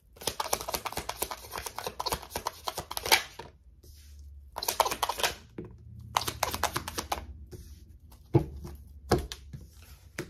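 A deck of tarot cards being shuffled by hand: three bursts of rapid, dense clicking of cards slapping together, then two single knocks near the end.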